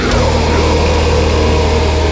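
Death/thrash metal: the drums drop out and distorted electric guitar and bass hold a sustained low chord, with a noisy sweep falling in pitch right at the start.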